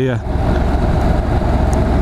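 Steady wind rush over the microphone with the drone of a Honda NC750's parallel-twin engine as the motorcycle cruises at road speed.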